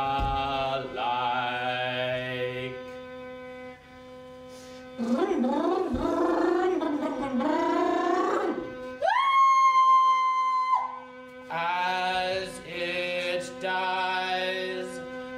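Live group chanting of long held notes over a steady drone, with sliding sung phrases in the middle. About nine seconds in, a loud, clear high tone rises into place and holds for nearly two seconds before the chanting resumes.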